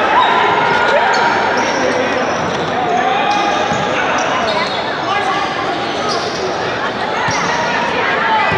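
Indoor futsal game: players shouting and calling out over one another, with the ball being struck and bouncing, all echoing in a large hall.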